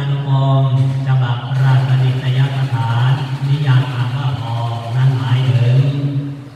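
A Buddhist monk's male voice reciting a sermon in a steady, near-monotone chant, with short pauses between phrases.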